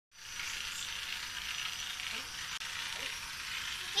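Battery-powered toy train running on its plastic track, its small motor and gears giving a steady whir.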